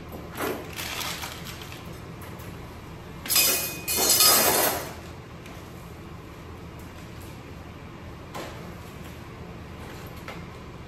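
Surgical instruments and sterile supplies being handled on a draped back table, with rustling and clinking in a few bursts; the loudest two come together about three to five seconds in.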